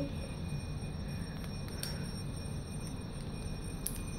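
A few faint, short clicks of batteries being handled and slid into the plastic battery section of a lightstick handle, the last one near the end a little sharper, over a steady low background hum.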